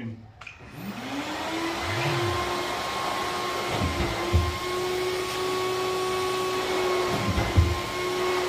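An old DeWalt dust extractor spins up and runs steadily at full suction, pulling air through a drywall sander's head and hose. About two seconds in, the sander motor briefly spins up and winds down. A few knocks from the sander head come near the middle and near the end; the suction is too weak to hold the sander against the ceiling.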